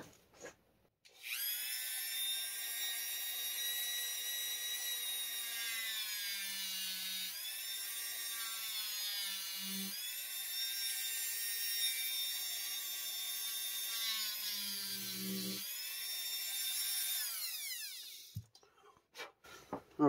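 Dremel 4000 rotary tool running at high speed while grinding a notch into a piece of EVA foam. The whine starts about a second in and its pitch sags several times as the bit bites into the foam. It spins down with a falling whine near the end.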